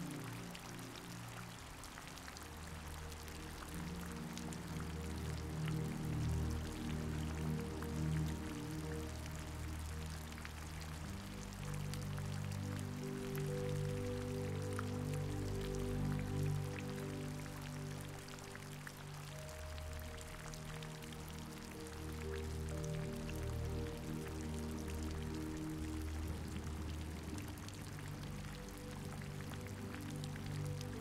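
Steady rain falling, an even hiss of drops, under soft, slow background music of long held low notes that change every few seconds.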